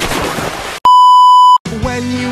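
A single loud electronic beep, one pure steady tone held for under a second that starts and stops abruptly. It comes after a short rush of noise and is followed by music with plucked guitar.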